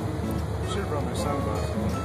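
Jet boat's engine running at low speed, a steady low drone, with music playing quietly over it.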